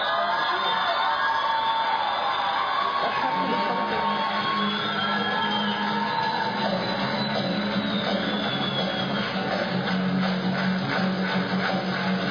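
Rock music played by a small band, with guitar and a voice singing over it.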